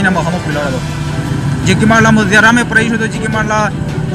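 Speech: a voice talking in a street interview, pausing for about a second, over a steady low background hum.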